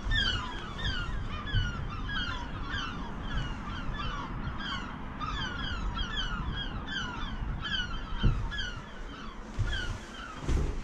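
Many birds calling at once in a rapid, continuous stream of short falling notes, several a second. A low rumble underneath, with one thump about eight seconds in.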